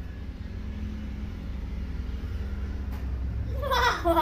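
A steady low rumble in the background, then, near the end, a loud pitched call from a hill myna.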